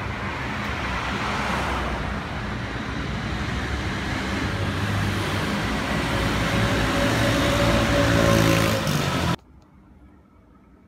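Street traffic with motor scooters and cars passing. One engine's note grows louder over the last few seconds, then the sound cuts off abruptly just before the end.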